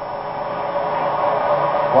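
A pack of NASCAR Cup V8 stock cars running flat out in a tight draft: a dense, steady engine drone that grows louder, heard through a television speaker.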